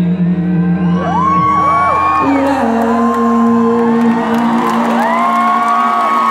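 Piano playing the song's closing chords, which shift twice. About a second in, an arena crowd breaks into cheering with whoops that rise and fall, and the cheering builds over the piano.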